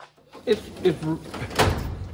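A steel parts-cabinet drawer loaded with screws and bolts is pushed shut, closing with a bang about a second and a half in.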